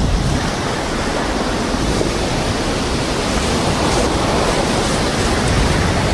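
A strong gust of wind rushing steadily, loud and even throughout.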